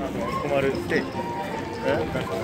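People talking while walking, with footsteps on the paved walkway.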